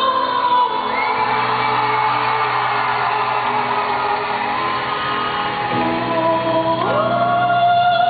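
Operatic soprano singing over accompaniment: a high, strained, shout-like passage, then the voice slides up into a long held note near the end.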